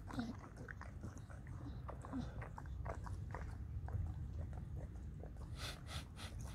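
English bulldog licking and chewing soil: a run of irregular wet smacking and crunching clicks from his mouth in the dirt, with a couple of brief low snorts.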